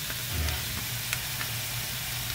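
Edamame pods and minced garlic sizzling in a wok, a steady hiss with a few faint clicks.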